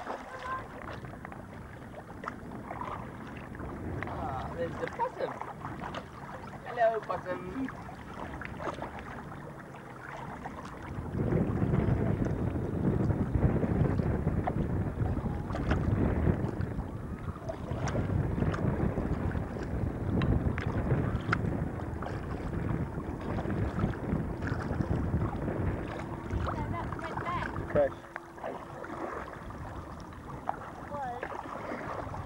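Wind and water noise on open water heard from a small boat, growing louder and heavier about a third of the way in and easing near the end, with faint voices.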